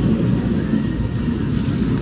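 Steady low rumble of background noise with faint, indistinct voices.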